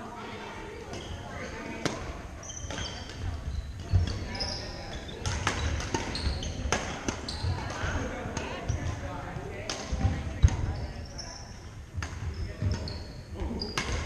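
Badminton play on a wooden gym court: sharp cracks of racquets striking the shuttlecock come every second or so, alongside short high shoe squeaks and footfall thumps on the floor, with voices in a large gym hall behind.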